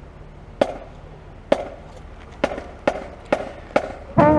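A count-off of six sharp clicks setting the tempo for the band: two slow, then four twice as fast.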